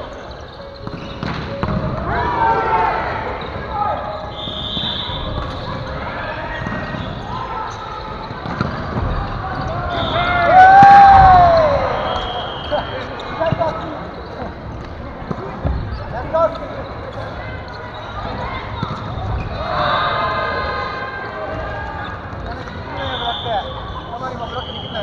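Gymnasium ambience during a volleyball game: players' voices and calls echoing in the hall, with thuds of a ball on the wooden floor. One loud drawn-out call rises and falls about ten seconds in.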